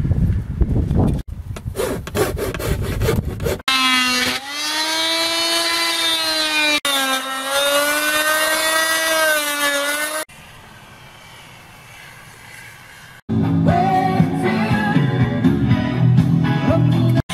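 Handheld rotary tool cutting into a wooden cabinet valance: a steady, high motor whine whose pitch sags and recovers as the bit is pressed into the wood, broken off briefly midway and stopping about ten seconds in. Rock music with guitar starts about three seconds before the end.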